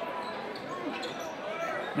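Gym sound during live basketball play: a basketball being dribbled on a hardwood court, with faint voices in the background.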